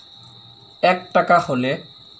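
A steady high-pitched insect trill. A man's voice speaks Bengali for about a second in the middle.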